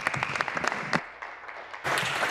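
Applause from members in a legislative chamber: many hands clapping, thinning about a second in and swelling again near the end.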